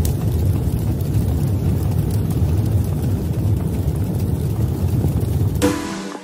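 Logo-intro sound effect: a loud, steady low rumble. Near the end a short ringing, chime-like tone sounds as the rumble fades away.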